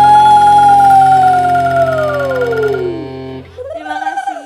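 A live qasidah band's closing held note: one smooth lead tone holds high, then slides slowly down in pitch and fades over a sustained chord. The chord stops about three and a half seconds in, and a brief pitched sound follows near the end.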